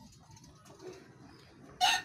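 A rooster starts crowing near the end: one long, loud, held call, after a stretch of faint background.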